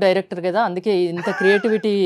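A woman's voice talking, with no other sound above it.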